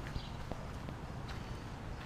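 Faint, irregular footsteps on a wood-chip mulch path over a low rumble, with a sharp click right at the start.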